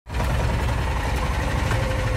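Golf beverage cart driving along, a steady low rumble with rattling from the cart.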